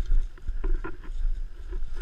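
Wind rumbling on a helmet-mounted camera's microphone, with scattered light knocks and rustles of gear being handled.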